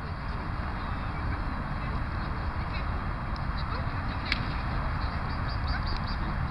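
Steady low rumbling outdoor noise, with a single sharp click about four seconds in.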